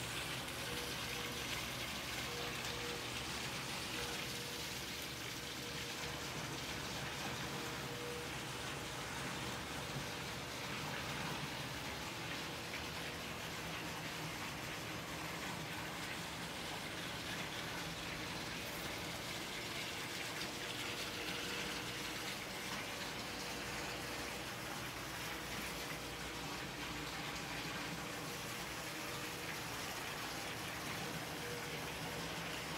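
Steady splashing of a pool water feature: a sheet of water spilling from a low stone wall into a swimming pool.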